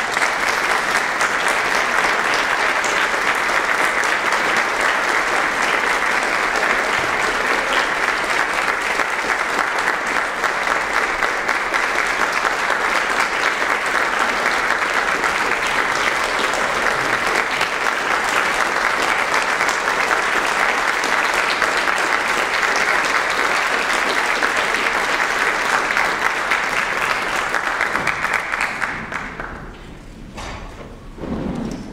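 Audience applauding: dense, steady clapping that dies away near the end.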